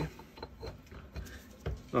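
A few faint metal clicks and knocks as the parts of a Fairey freewheeling hub are worked by hand onto their three pins, with a small thud near the end as they seat in place.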